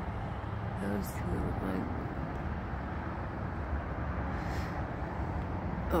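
Steady low rumble of a vehicle running, heard outdoors, with a faint voice speaking briefly about a second in.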